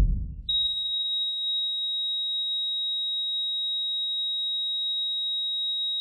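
The tail of a loud deep boom fading out, then about half a second in a steady high-pitched electronic beep tone starts and holds at one unchanging pitch.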